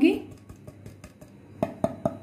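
Light clicks and taps of a plastic plate and a steel spoon against a glass mixing bowl as ground spices are tipped in, with two sharper taps near the end.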